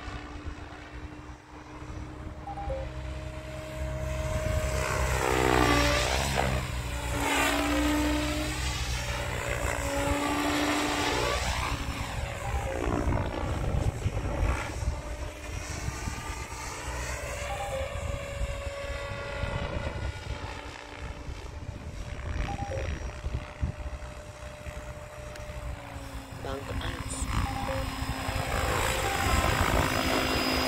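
Electric RC helicopter with a brushless X-Nova motor and 715 mm rotor blades, flying. The rotor and motor whine swoops up and down in pitch as it passes, and grows louder near the end as it comes in low.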